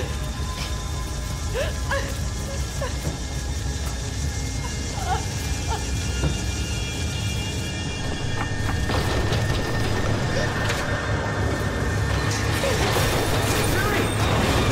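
Horror-film sound mix: a steady low rumble under held eerie tones, with short rising and falling pitched sounds, and a rushing noise that swells from about nine seconds in. Voices shout names near the end.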